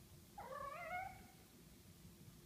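A kitten meowing once, a single call of under a second with a wavering pitch.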